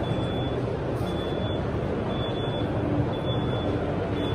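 Steady din of a busy indoor exhibition hall, with a high electronic beep that repeats about once a second, each beep lasting about half a second.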